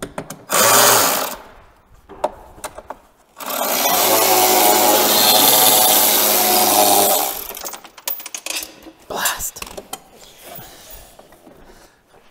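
Cordless power driver spinning out a 10 mm bumper bolt on a snowmobile: a short run about half a second in, then a steady run of about four seconds, followed by scattered clicks of tools and hardware.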